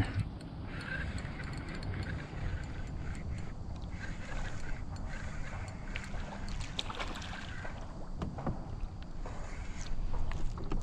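Steady low rumble of water and hull noise around a fishing kayak on the move, with a few faint clicks.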